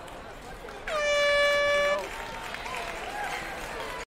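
A single steady horn blast of about a second, one unwavering pitch, marking the end of a competitor's timed obstacle-course run, with people talking around it.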